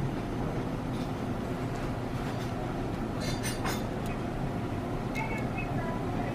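Plastic braces-colour swatch cards on a ring clicking against each other as they are flipped, a few quick clicks a little past halfway, over a steady low rumble.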